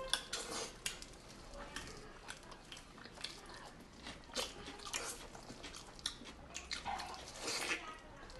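Close-miked eating sounds from people eating braised pork knuckle: chewing and mouth smacks with many short clicks and taps scattered throughout, fairly quiet.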